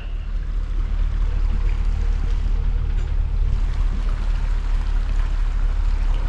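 Pickup truck engine rumbling steadily while the truck creeps forward at walking pace, with road and air noise on the microphone.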